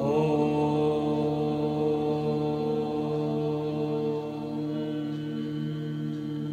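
A man's voice chanting a long, sustained Om on one steady pitch, growing a little quieter about four seconds in.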